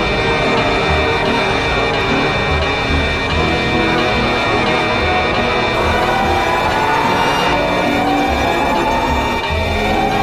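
Loud, eerie electronic alarm music: steady high tones over a pulsing low beat, with a siren-like tone slowly rising in pitch from about halfway through.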